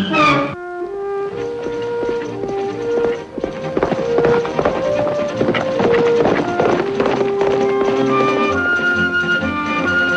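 Orchestral western score: a falling swoop right at the start, then a slow melody of held notes. Through the middle a horse's galloping hoofbeats run under the music.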